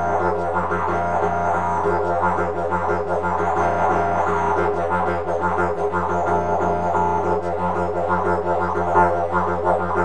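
Didgeridoo played in a fast, rolling rhythm over an unbroken low drone, the player switching between several variations of the same rhythmic phrase.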